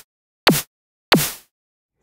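Synthesized snare drum from the Vital synth triggered repeatedly, about one hit every 0.6 s. Each hit is a sine-wave punch dropping fast in pitch from high to low, layered with a burst of white noise. The last hit, about a second in, has a longer fading noise tail.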